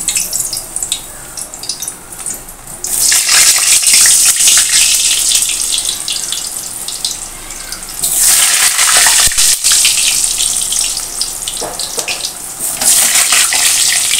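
Halved potatoes frying in hot mustard oil in an aluminium kadai, a loud crackling sizzle. The sizzle surges about three seconds in, again around eight seconds and near the end, as more potato pieces go into the oil.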